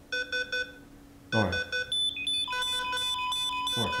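Hospital heart monitor beeping: three short beeps at the start, then from about two seconds in the beeping quickens and several steady electronic tones stack up, the sign of the patient's heart rate rising.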